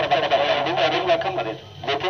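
A person talking, continuous voice that drops off briefly near the end.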